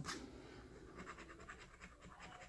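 A plastic scratcher disc scraping the latex coating off an instant lottery ticket, a quick run of faint scratching strokes.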